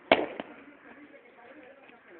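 A single sharp bang or crack with a short tail, followed by a fainter knock about a third of a second later.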